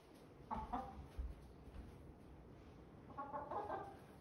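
Pet chickens clucking in their wire cage: a short two-note cluck about half a second in, and a quicker run of clucks near the end. A soft low bump comes about a second in.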